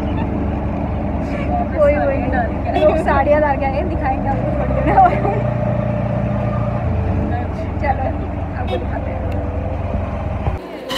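Auto-rickshaw engine running under way, heard from inside the open passenger cabin as a steady low drone. Its note shifts about four seconds in and again near seven seconds.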